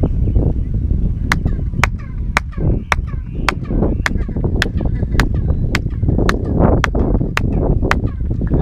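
Hand claps, about two a second, in front of the stepped stone staircase of El Castillo, Chichen Itza. Each clap is answered by a short falling chirp echo off the steps: the staircase echo known for sounding like a quetzal bird's call.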